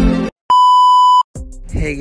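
Background music cuts off, then a single loud, steady electronic beep sounds for under a second. After a short gap a new music track starts.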